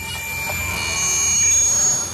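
Synthesized ambient drone with several steady high-pitched tones over a low hum, swelling to a peak past the middle and fading near the end.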